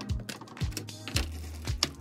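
Background music with a steady beat: a deep bass line under sharp percussion hits a little over half a second apart.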